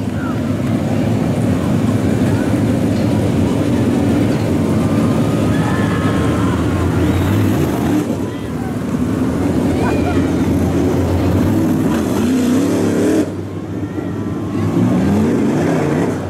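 Several dirt late model race car V8 engines running at low speed with the cars stopped or creeping on the track, a steady loud rumble. An engine revs up about twelve seconds in and again near the end. Crowd voices are faintly underneath.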